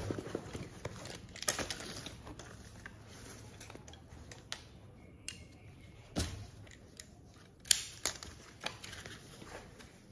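Rustling and handling of a camera backpack and camera: fabric and strap rubbing, with scattered small clicks and knocks. The sharpest knocks come about six and eight seconds in.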